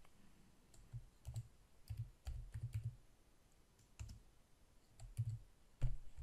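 Typing on a computer keyboard: single keystrokes and short runs of keystrokes with pauses between them, the busiest run a little after two seconds in.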